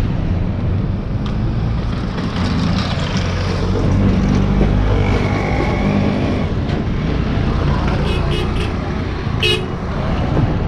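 Road traffic close by: truck and car engines running steadily, with a vehicle horn sounding briefly about halfway through.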